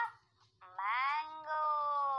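High-pitched, drawn-out vocal calls: a short rising call right at the start, then a little over half a second in a long call that rises and slowly falls.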